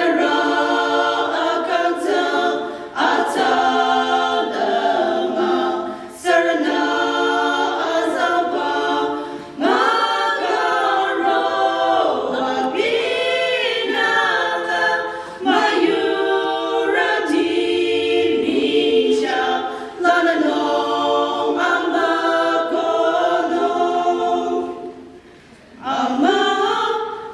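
A small women's choir singing a cappella, in phrases of a few seconds with short breaks for breath between them.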